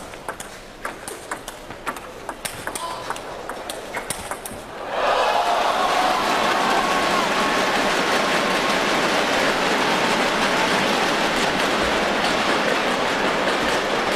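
Table tennis rally: the ball clicks off the paddles and the table in quick, irregular hits. About five seconds in the point ends, and a crowd breaks into loud cheering and applause that carries on.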